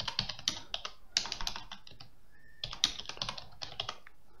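Typing on a computer keyboard: two quick runs of keystrokes with a short pause about two seconds in.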